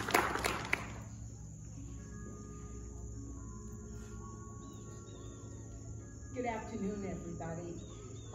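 A small crowd applauding, the clapping fading out within the first second, followed by quiet outdoor air with faint thin steady tones.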